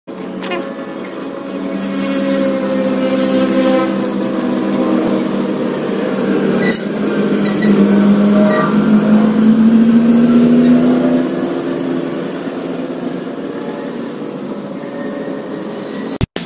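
An engine running, its pitch slowly rising and its sound growing louder toward the middle before easing off, with a few short high chirps over it.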